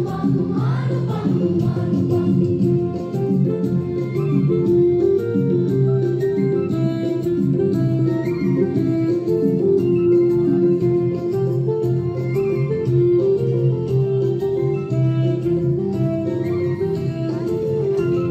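A song sung by a group of voices in unison over instrumental accompaniment, running steadily with a sustained melody.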